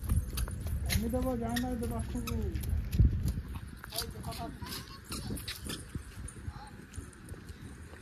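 Wind rumbling on the microphone, with a drawn-out wordless vocal call about a second in and a shorter one a few seconds later. Light footsteps on paving stones tick throughout, and a thump comes at about three seconds.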